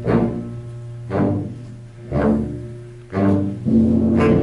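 Concert wind band playing live. Four accented chords come about a second apart, each dying away over a held low bass note, and the full band swells in near the end.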